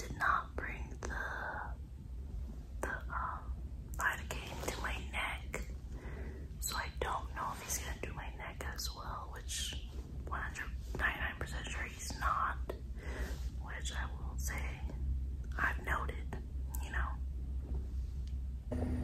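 A woman whispering close to the microphone in short, breathy phrases, over a low steady hum.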